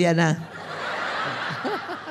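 A man's voice finishes a sentence, then a large audience laughs together. The laughter swells for about a second and a half and then dies away, with a few individual chuckles near the end.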